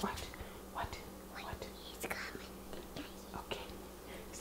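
A young child's soft, whispered voice in faint snatches, over a low steady hum.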